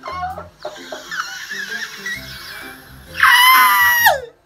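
High-pitched excited squealing from a person over background music with a steady beat, ending in a loud, long shriek about three seconds in that drops in pitch as it cuts off.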